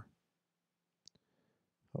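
A single faint click, typical of a computer mouse button, about a second in; otherwise near silence.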